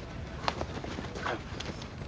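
Boots shuffling and tapping on asphalt, with one sharp tap about half a second in and a brief faint voice a little later.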